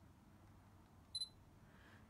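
A Sony A7R II's single short, high electronic beep a little over a second in, the focus-confirmation signal as the adapted 70-400mm lens locks focus at 400 mm after slow hunting. Otherwise near silence.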